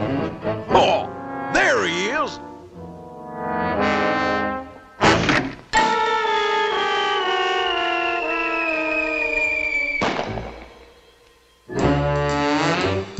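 Animated-cartoon orchestral score with brass and comic sound effects. Wobbling pitch glides come early and a sharp knock comes about five seconds in. Then a long, slowly falling whistle-like glide runs over descending notes, the cartoon sound of a fall, and stops abruptly about ten seconds in, leaving a short noisy burst that fades away.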